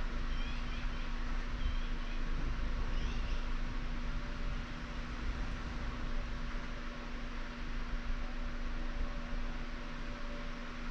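Steady room noise: an even hiss with a constant low hum underneath. A few faint, short, high chirps come in the first three seconds.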